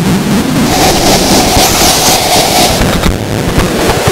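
Experimental noise music: a loud, dense wash of distorted noise over a low rumble and hiss, with a held mid-pitched drone through the middle.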